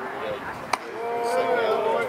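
A single sharp pop of a pitched baseball into the catcher's mitt, followed by voices calling out with long, drawn-out shouts.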